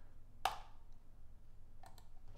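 Two short clicks at a computer: a sharp one about half a second in and a fainter one near the end, over faint room tone.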